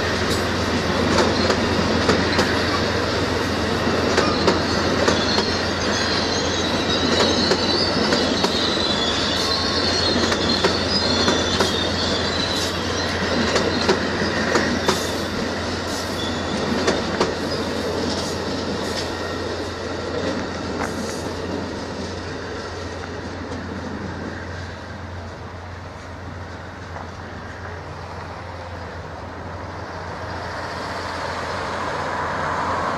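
Amtrak Superliner bi-level passenger cars rolling past on steel rails, the wheels clicking over the rail joints. A high wheel squeal rides over the rumble in the first half. The sound fades in the last third as the last car draws away.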